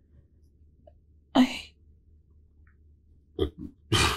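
Hesitant speech from a woman: a single breathy "I" about a second and a half in, then a short "look" near the end. Between them there is only a quiet low room hum.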